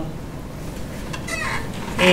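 A short, high squeak falling in pitch, about a second and a half in, just after a faint click: a squeaky chair moving. Low room noise runs under it.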